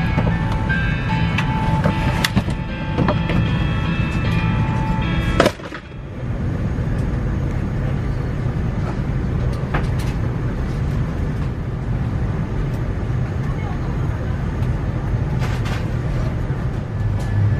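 Airliner cabin ambience at the gate: a steady low hum of the cabin air and aircraft systems, with held musical tones over it for the first few seconds. A sharp click and short drop about five and a half seconds in, after which the steady hum carries on alone.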